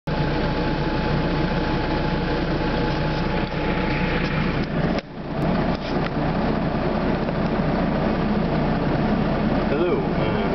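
Husky mine-detection vehicle's engine running with a steady low drone, heard from inside the armoured cab, with a thin steady whine over it for the first half. The sound drops out abruptly about halfway, then the engine drone resumes.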